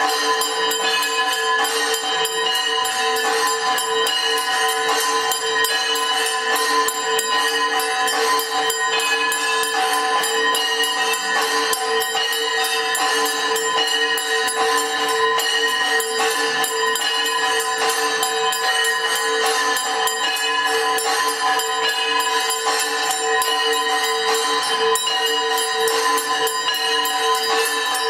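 Temple aarti bells ringing continuously and rapidly, with jingling metal percussion, a dense unbroken ringing that holds steady throughout.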